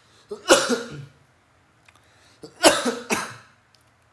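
A person coughing twice, a few seconds apart: a lingering cough that has not yet cleared up.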